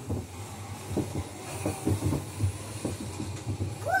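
A run of irregular soft knocks and bumps over a steady low hum.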